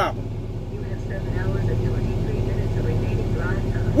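Paccar MX-13 diesel engine of a semi-truck running steadily, a low even hum heard from inside the cab.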